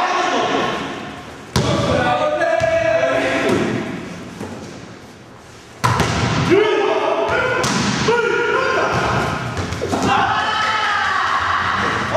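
Heavy thuds of judoka landing on judo mats, two sharp ones about 1.5 s and 6 s in and several more after, among people's voices.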